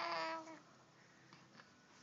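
Baby cooing: one short, even-pitched vowel sound in the first half second, then quiet.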